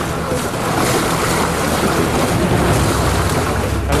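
Sea water splashing and churning as players paddle on inflatable rings, with wind on the microphone. The noise is steady throughout.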